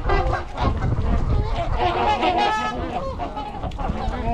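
A mixed flock of trumpeter swans and Canada geese honking, many calls overlapping at once.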